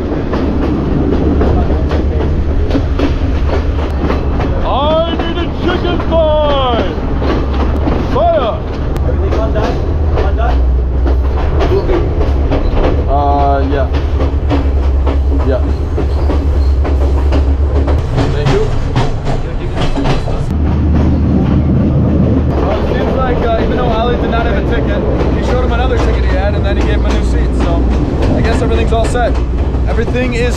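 Sri Lanka Railways S14 diesel multiple unit under way, heard from an open carriage doorway: a steady low rumble with the clickety-clack of wheels over rail joints running on throughout.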